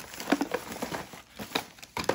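A thin plastic trash bag crinkling and rustling in short, irregular crackles as a hand digs through the small cardboard boxes packed inside it.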